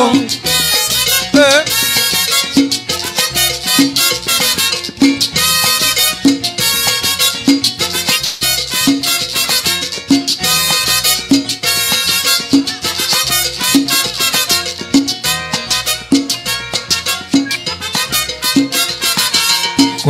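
Salsa band playing an instrumental stretch between sung choruses: trumpets, upright bass and percussion on a steady dance beat.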